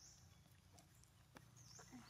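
Near silence: faint outdoor background with a few soft ticks and a faint high chirp about one and a half seconds in.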